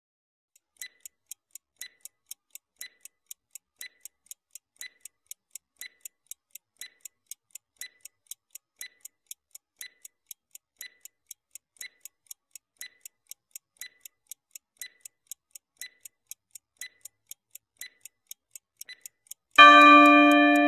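Clock-ticking sound effect of a quiz countdown timer, sharp ticks about twice a second, starting about a second in. Right at the end a louder ringing chime with several pitches cuts in as the countdown runs out.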